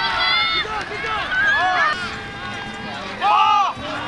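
Several voices shouting and yelling at once from spectators and players on the sidelines during a flag football play, with a loud shout about three seconds in.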